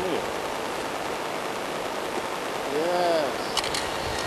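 Steady outdoor hiss, with one drawn-out exclaimed vocal sound rising and falling in pitch about three seconds in, followed by a couple of faint clicks.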